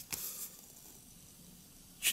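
Brief rustle of a folded paper instruction sheet being handled and opened in the hands, in the first half second, then a faint hiss of room tone.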